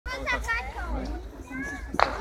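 Children's high voices and crowd chatter, with one sharp snap right at the very end.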